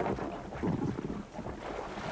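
Wind noise on the microphone over open sea water, with uneven water sloshing and splashing as a person in an immersion suit hauls themselves out of the water onto an inflatable life raft's buoyancy tube.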